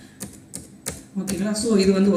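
Computer keyboard keys clicking as text is typed and deleted in a password field: a handful of separate keystrokes, about three a second.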